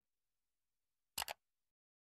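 Near silence broken by one short double click about a second in, a button-click sound effect.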